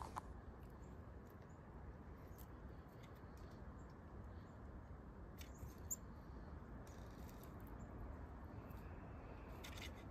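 Faint scattered light ticks and rustles in dry leaves around a bucket of shelled corn, over a steady low hiss.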